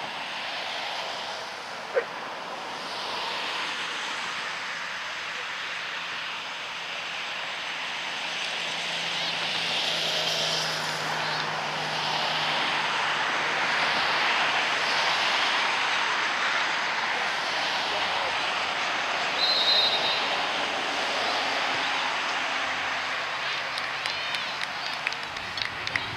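Airplane passing overhead: a steady roar that swells over the first ten seconds and then holds. A short, high referee's whistle sounds about twenty seconds in.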